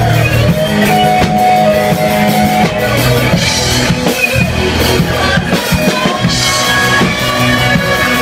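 Live rock band playing loud: electric guitars over a drum kit.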